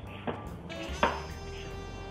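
Vegetable peeler scraping down a raw carrot, shaving off long strips, with a sharp click about a second in. Faint background music runs underneath.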